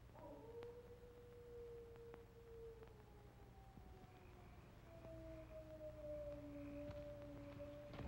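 Faint howling of a dog: two long, drawn-out howls that overlap, each slowly falling in pitch.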